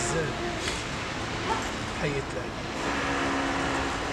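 Steady noise of street traffic, with one short spoken word about two seconds in.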